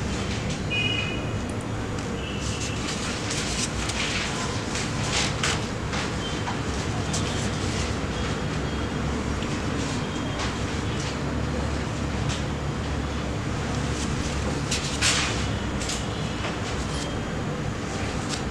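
A steady low rumble of background noise, with scattered light clicks and rustles.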